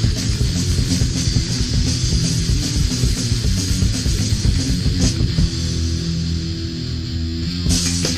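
Recorded punk rock band playing flat out: distorted electric guitar, bass and drums in a dense, steady wall of sound, with a cymbal crash near the end.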